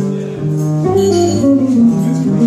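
Jazz played on a hollow-body archtop electric guitar with an upright double bass, an instrumental passage of melodic guitar lines over the bass, without vocals.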